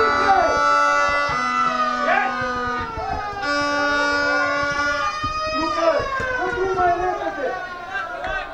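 Several horns blown from the crowd, long held notes overlapping at different pitches, some sliding down in pitch about two-thirds of the way in, mixed with shouting voices.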